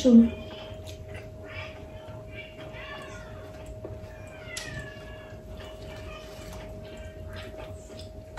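Several faint, short animal calls that slide up and down in pitch, spread over a few seconds, over a steady low hum.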